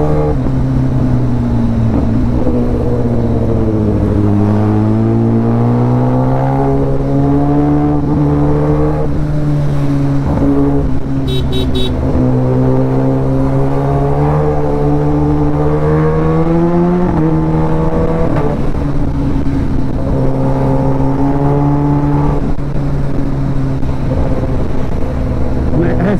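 Sport motorcycle engine running under way in traffic. Its pitch sags a few seconds in, then climbs slowly as the bike accelerates, drops abruptly about seventeen seconds in, and then holds steady. Wind noise runs underneath.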